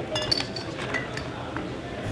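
Glass beer bottles in cardboard six-pack carriers clinking together as they are picked up off a bar: several sharp clinks with brief ringing in the first half-second, then a few lighter clinks.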